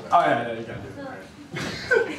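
Men's voices talking and laughing off-microphone, with a short cough-like burst about a second and a half in.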